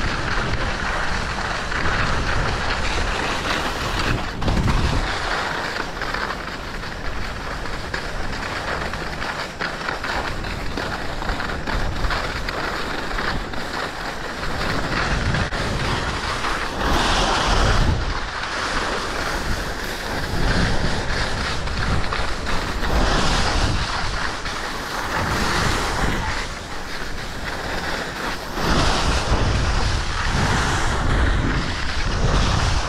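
Wind rushing over the camera microphone while skis hiss and scrape over packed snow on a downhill run, with several louder scraping swells in the second half.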